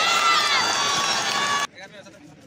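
Football spectators shouting and cheering together in high, held cries as the ball goes toward the goal, cut off abruptly near the end.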